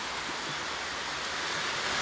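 Steady, even background hiss with no distinct sound in it.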